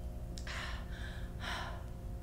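A woman's faked sobbing: three short, breathy, gasping breaths about half a second apart, with no voice.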